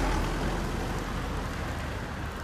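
Outdoor ambient noise: a steady rushing with a deep rumble, slowly fading.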